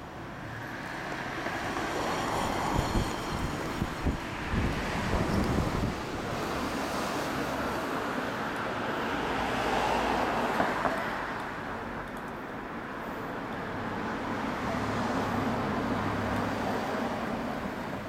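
Road traffic passing, its noise swelling and fading about three times.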